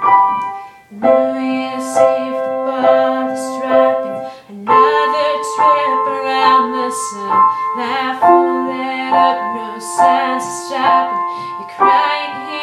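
Grand piano played with both hands: a slow introduction of repeated struck chords, about one or two a second, over held bass notes.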